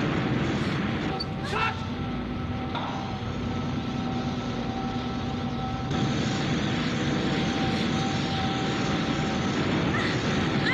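A steady low rumble with a faint held hum running through it, from a film soundtrack. A brief high vocal sound comes about one and a half seconds in, and the rumble changes character about six seconds in.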